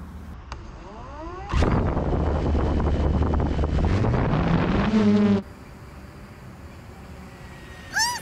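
Quadcopter drone motors spinning up with a rising whine, then a loud buzz with propeller wash blowing on the microphone as it lifts off, its pitch climbing as the motors speed up. The sound cuts off abruptly a little past five seconds in.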